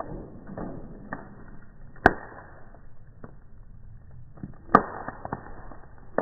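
Wooden bonfire crackling, slowed down with the slow-motion footage so the crackle sounds low and muffled. Scattered pops, with two sharp loud ones, one about two seconds in and another about a second before the end.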